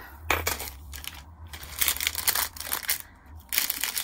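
Clear plastic packaging crinkling and rustling in irregular bursts as it is handled.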